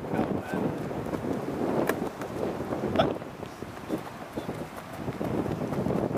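Wind buffeting the camera microphone, a steady low rumble, with two short sharp clicks about two and three seconds in.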